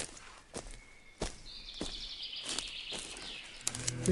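Footsteps, about one every half second or so, over faint outdoor ambience, with a brief high-pitched sound in the middle: a sound-effect intro in a recorded song.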